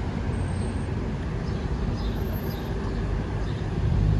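Steady city street traffic noise: a continuous hum of passing cars.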